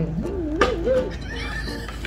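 A man's drawn-out, playful whining cry, "aaiiiiing", wavering up and down in pitch for about a second.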